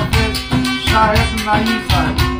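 Baloch folk music played on strummed long-necked lutes, with a steady rhythm of about four strokes a second under a wavering melody line.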